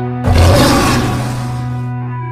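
A single loud lion roar starts suddenly about a quarter of a second in and dies away near the end, over a sustained, held music chord.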